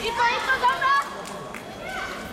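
Raised voices in a large sports hall: a loud call or shout in the first second, then a quieter background of voices.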